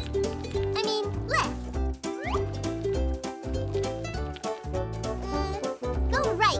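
Background music for a children's cartoon, with a pulsing bass line under a melody and a few sliding, up-and-down notes.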